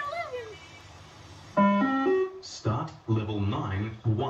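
Beep-test (multi-stage fitness test) recording sounding its electronic signal, a short run of stepped keyboard-like notes about one and a half seconds in, the cue for runners to reach the line. Voices follow from a little before three seconds.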